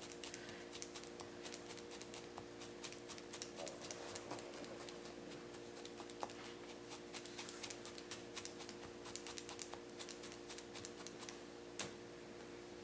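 A felting needle being jabbed repeatedly into wool over a burlap-covered felting pad: faint, rapid, irregular ticks, with a steady low hum underneath.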